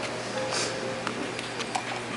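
Applause in a concert hall dying away to a few scattered claps, over low room noise, with a short hiss about half a second in.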